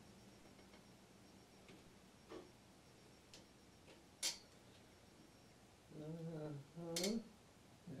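Faint clicks from the buttons and knobs of a Kemper Profiler amp being adjusted, with one sharper click about halfway through. A low murmured voice comes in near the end.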